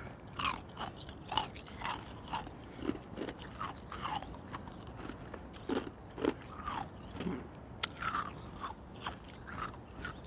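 Close-miked crunching as hospital ice is bitten and chewed: sharp, uneven crunches about two a second, with a short lull about halfway through.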